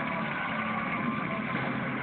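Studio audience applauding and cheering from the television, picked up through a phone's microphone as a steady wash of noise.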